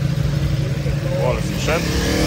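Motorcycle engine running at low revs close by as the bike creeps past in slow traffic, a steady low hum, with scooters moving alongside.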